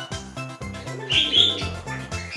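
A short bird call about a second in, lasting about half a second and louder than the background music with a steady beat.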